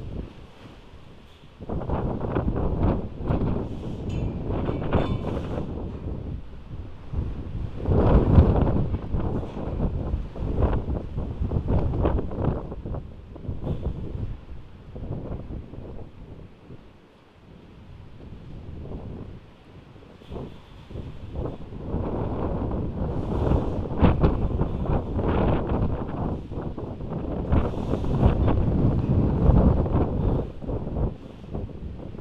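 Heavy wind gusting and buffeting a microphone, rising and falling in surges, with brief lulls about a second in and again past the middle.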